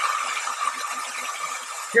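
Conair Vagabond travel hair dryer running steadily: an even hiss of air with a thin steady whine, blowing on wet gouache on sketchbook paper to dry it.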